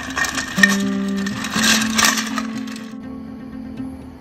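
Ice cubes clinking and rattling against a metal ice bucket as a sake bottle is pushed down into the ice, stopping about three seconds in. Soft acoustic guitar music plays underneath.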